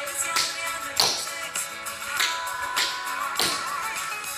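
Tap shoes striking a wooden floor in tap and shuffle steps, in time with a recorded pop song with singing.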